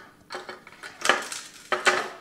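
Metal clinks and knocks as a Mackie CR-1604 jack board is handled against the mixer's sheet-metal chassis and fitted into place. There are two louder knocks, about a second in and near the end.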